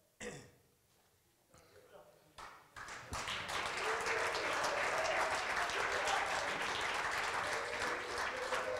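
Audience applauding, starting suddenly about three seconds in and then keeping up steadily.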